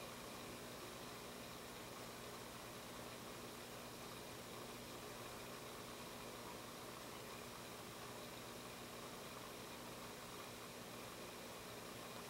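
Faint steady hiss with a low hum: room tone.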